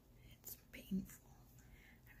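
A woman's quiet speech, a short word or two about a second in, over faint low room noise.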